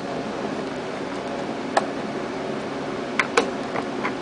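A few small sharp clicks from cables and connectors being handled at a CNC stepper driver board, over a steady hum.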